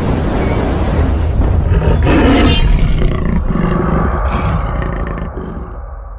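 Intro sound effect of a deep, rumbling big-cat-like animal roar that swells about two seconds in and then fades away near the end.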